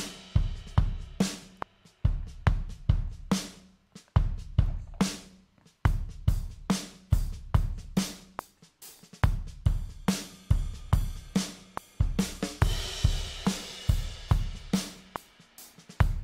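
GarageBand Drummer virtual drum kit (the Indie Rock drummer's 'Brooklyn' kit) playing back a steady rock beat of kick, snare and hi-hat. Cymbal washes ring out near the start and again about thirteen seconds in.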